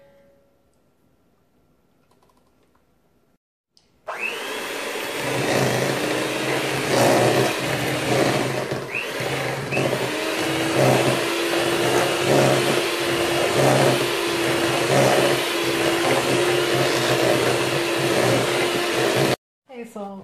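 Electric hand mixer starting about four seconds in and running steadily for about fifteen seconds, its beaters working a thick cream cheese and butter mixture in a stainless steel bowl with a regular pulsing, then cutting off suddenly.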